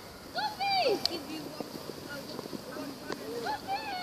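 Young children calling out at a distance during a football game: a rising-and-falling shout about half a second in and another starting near the end, with two sharp knocks, one about a second in and one near three seconds.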